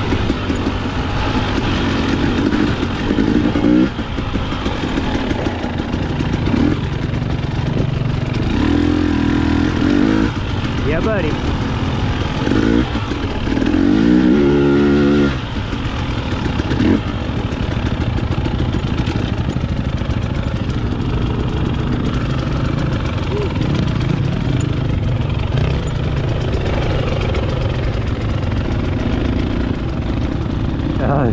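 2021 Husqvarna TX300i fuel-injected two-stroke single-cylinder engine running under way on a dirt trail, revving up hard in several bursts as the throttle is opened, the loudest about halfway through.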